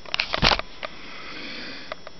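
A person sniffing through the nose close to the microphone: a few short sniffs in the first half second, the strongest about half a second in, then a faint drawn breath. A small click comes from handling the phone near the end.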